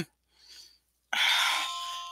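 A person coughing close to a headset microphone: a sudden noisy burst about a second in that fades out over about a second.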